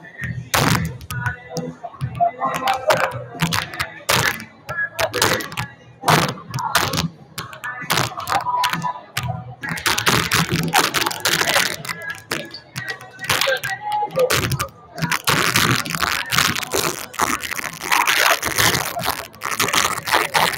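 Volleyballs being hit and bouncing off a gym floor and walls in warm-up, an irregular string of sharp smacks that crowds together from about halfway through, over the chatter of players and spectators.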